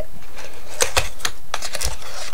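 Handling noise from a notebook set being slid out of its cardboard case, with a run of light clicks and taps about halfway through.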